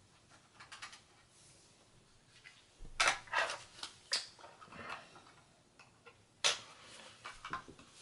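Quiet scattered clicks and light clatter of a laptop's solid state drive and its small hard parts being disconnected and handled. There is a cluster of clicks a few seconds in and a single sharper click past the middle.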